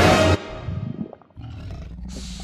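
Loud music cuts off suddenly about a third of a second in, leaving a much quieter low rumbling animal sound effect for a cartoon snake. The rumble drops out briefly just past halfway, then resumes.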